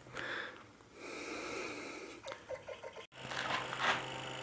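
Soft breathy noise close to the microphone, like a person exhaling, then a brief break and a low steady hum.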